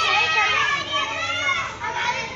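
Several children's high voices shouting and calling out to each other at play, fading a little near the end.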